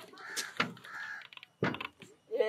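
A crow cawing a few times in short calls, with a single knock near the end.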